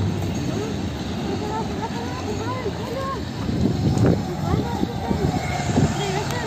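Covered hopper cars of a freight train rolling away over a street level crossing: a steady rumble and clatter of wheels on rail. About four seconds in comes a brief louder knock, as a car starts across the tracks behind the train.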